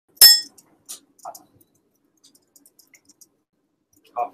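A single sharp clink with a brief high ringing, followed by a few faint clicks and knocks.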